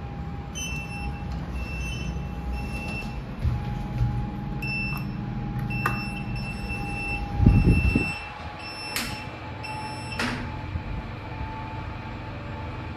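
Passenger lift sounding short, high warning beeps in a repeating pattern while its doors are held open, over a steady hum. About seven and a half seconds in, the doors shut with a loud thump, followed by two sharp clicks.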